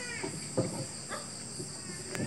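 Night insects chirping steadily in a continuous high-pitched trill, with a few faint short sounds underneath.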